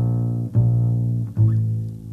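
Plucked bass playing slow, ringing single notes that sustain and fade. A new note comes in a little under every second.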